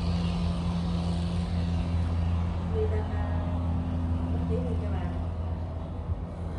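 A steady low mechanical hum that holds an even pitch.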